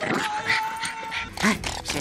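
A dog whining in one long steady note, then a short cry about one and a half seconds in.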